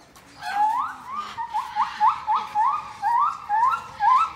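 An animal's short, rising whistle-like calls, repeated about three times a second, starting about half a second in.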